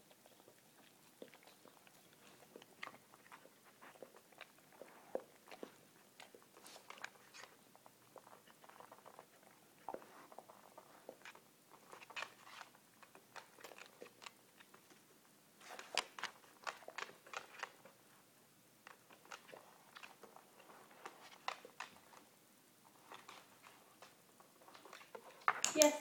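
A dog chewing and crunching small treats, a run of short irregular crackles and clicks, with the taps of its paws shifting on a hardwood floor. A sharp click comes at the very end.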